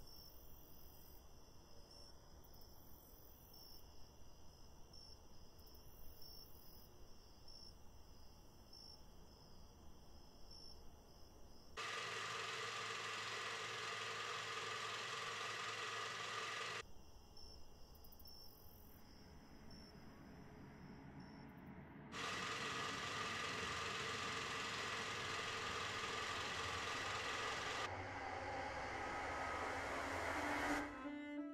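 Faint insects chirping steadily in a quiet night ambience. Twice, loud even hiss-like noise switches on abruptly for about five seconds and cuts off just as suddenly.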